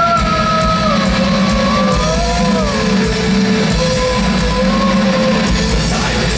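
Symphonic metal band playing live at full volume: drums and distorted guitars under a held melodic line that sinks about a second in and then moves in small steps.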